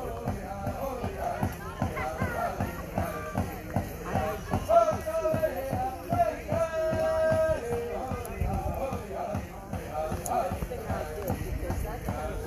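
Pow wow drum and singers: a steady drumbeat with voices singing long held notes over it, mixed with crowd chatter.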